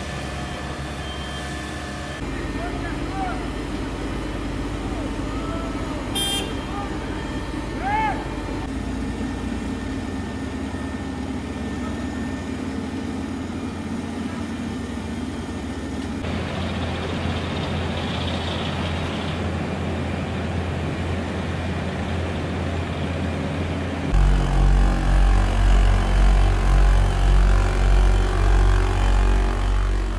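Diesel engines of road-paving machinery (asphalt rollers, a paver and a dump truck) running steadily. Near the end a close-up Bomag tandem roller gets much louder, with a low throb that pulses about twice a second.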